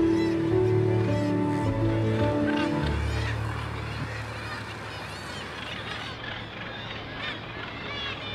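Soft background music with sustained notes, ending about three seconds in, over a seabird colony calling: many short, overlapping calls all the way through.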